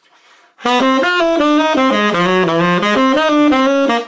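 Tenor saxophone playing a jazz etude phrase of running eighth notes, starting about half a second in. The upbeats are tongued and the downbeats slurred into (mainstream articulation), so the line flows smoothly.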